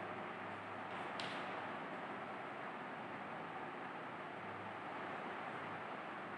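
Quiet steady hiss and low hum of room tone between the teacher's sentences, with one faint short scratch about a second in, likely chalk on the blackboard as he starts writing.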